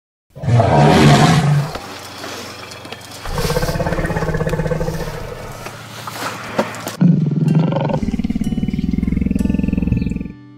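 Lion roaring: three long, deep roars, the first about half a second in and the loudest, the next at about three seconds, and a third, low and pulsing, from about seven seconds.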